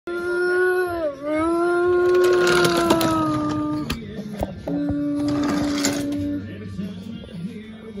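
A person's voice holding two long, steady notes, the first about four seconds long with a brief dip in pitch about a second in, the second shorter, a mouth-made train horn for a wooden toy train. A few light clicks sound under the notes.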